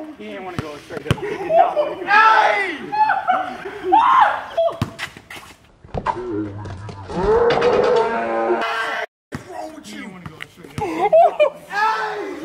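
Several young men's voices shouting and exclaiming, with a long, drawn-out yell about seven seconds in. A few sharp knocks are scattered between the shouts.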